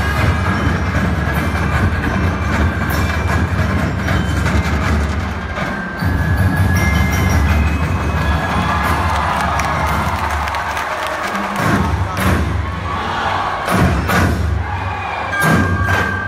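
Loud Sinulog festival music with heavy drums and percussion, played for the dancers over the stadium sound system. A crowd cheers about halfway through, and sharp drum strikes cut through near the end.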